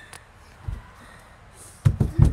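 A child coming down from a handstand attempt onto a wooden porch deck: a soft thud about a third of the way in, then a sharp, louder thud near the end.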